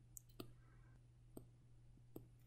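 Near silence with a few faint clicks of a stylus tapping on a drawing tablet, over a steady low electrical hum.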